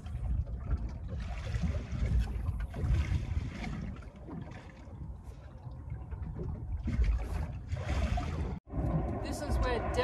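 Wind buffeting the microphone on an open boat deck, with water lapping against the hull; the hiss swells twice and cuts out abruptly near the end.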